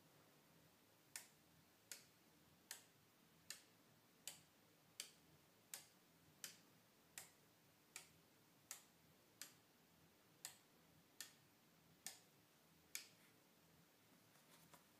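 Relays on a home-built relay computer's ALU cards clicking as the input bits are toggled one after another, about sixteen sharp clicks evenly spaced roughly three-quarters of a second apart.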